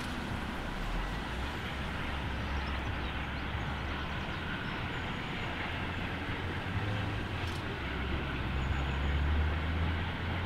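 Distant steam locomotive, the three-cylinder Bulleid Merchant Navy Pacific 35028 Clan Line, working hard up a steep bank as a low, steady exhaust rumble. The rumble grows a little louder near the end.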